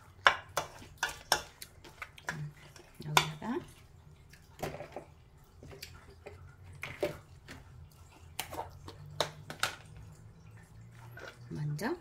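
Wooden spoon knocking and scraping against a stainless steel mixing bowl while tossing salted, julienned radish, with irregular clicks and a wet rustle from the moist strips that have started to release water.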